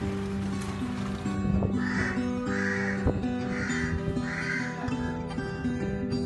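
Acoustic guitar background music, with a crow cawing four times in the middle, each caw about half a second long.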